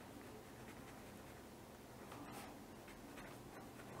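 Faint scratching of a fine-tip pen writing on paper.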